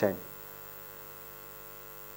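A man's voice ends a word at the start, then a steady electrical mains hum: a constant buzz made of many fixed tones, unchanging in level.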